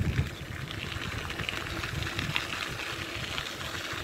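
Bicycle rolling along a gravel path: a steady rumble of the tyres on the loose surface, with fast, irregular ticking and rattling from the bike.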